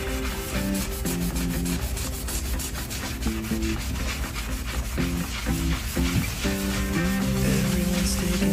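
A cloth scrubbing foamy cleaner over a smooth wood-grain surface in quick repeated rubbing strokes. Background music with low plucked notes plays under it.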